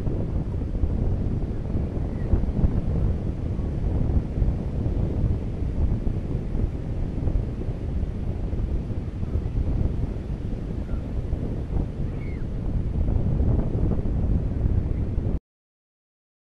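Ocean surf and wind recorded through the Hooke Verse binaural headset microphones, worn without wind protection: a heavy, gusting rumble of wind buffeting the mics over the wash of the waves. It cuts off suddenly near the end.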